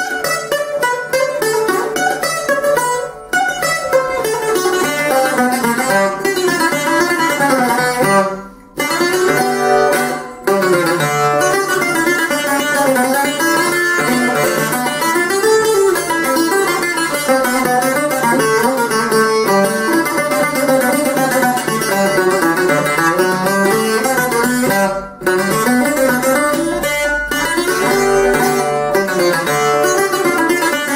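Six-string bouzouki, its three double courses picked with a plectrum, played solo in fast melodic runs. The playing breaks off briefly a few times, most deeply about nine seconds in.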